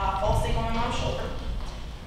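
A woman talking into a handheld microphone, with some low thuds under her voice.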